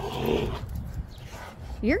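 Rottweilers at rough play: a short, low sound from a dog in the first half-second, over a steady low rumble of wind on the microphone.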